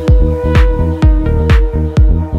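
Melodic techno: a steady four-on-the-floor kick drum about twice a second, with sharp percussion hits between the kicks and held synth notes.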